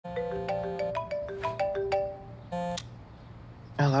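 Phone ringtone playing a quick melody of short, chiming notes, followed by a brief buzzier tone.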